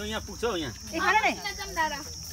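A steady, high-pitched drone of insects, with people's voices talking over it in short bursts.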